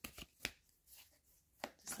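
Tarot deck being handled: a few separate sharp taps of the cards, the loudest about half a second in, with quiet between.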